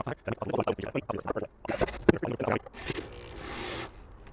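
Knocks and scraping as a wooden board is handled against a metal bench bracket, with one sharp knock about two seconds in. About three seconds in, a corded electric drill runs steadily for about a second, driving a screw through the bracket into the board.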